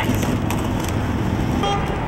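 Steady street traffic noise, with a brief short tone near the end.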